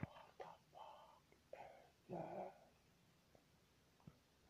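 A faint whispering voice in a few short breathy bursts over the first couple of seconds, after a sharp click right at the start.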